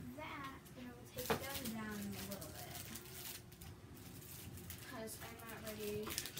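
A person's voice, low and indistinct, in short stretches, with one sharp knock about a second in.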